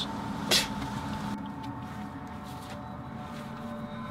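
Steady low background rumble with one short, sharp noise about half a second in.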